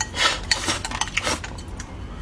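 Wooden chopsticks scraping and clicking against a ceramic bowl as the last of the food is shovelled from the rim into the mouth, with close-up eating noises. A noisy scrape-and-slurp in the first half-second, then a few sharp clicks.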